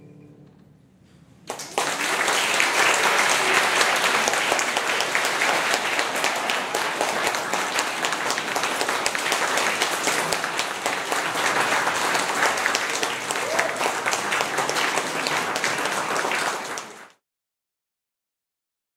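Audience applause, starting about a second and a half in after a short hush and running on steadily until it cuts off abruptly near the end.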